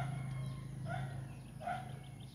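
Short bird calls, each brief and repeated about once a second, over a steady low hum.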